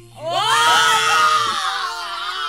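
Several women screaming and squealing together in excitement, the screams breaking out about a quarter second in and fading into laughter, with the song playing underneath.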